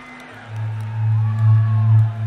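Live heavy-metal concert in an arena: over crowd noise, the band's amplified instruments come in about half a second in with a loud, sustained low note that swells and pulses.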